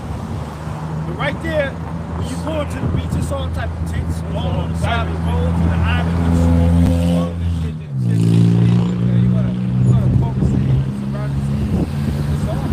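A motor vehicle engine running with a steady low drone, its pitch dropping and changing about eight seconds in, under indistinct voices.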